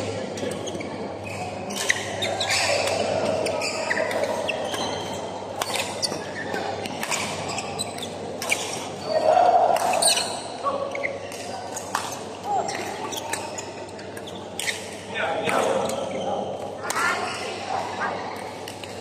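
Badminton rackets striking a shuttlecock during a doubles rally, short sharp hits at irregular intervals, ringing in a large echoing sports hall.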